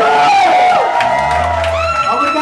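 Live band music with a male singer holding a long note that slowly sinks in pitch, and a deep bass note coming in about a second in.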